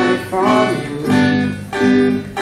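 Two acoustic guitars strumming chords together, with fresh strums about a second in and near the end.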